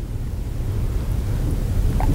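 A steady low rumble with a faint hiss over it, without any clear tone or separate events.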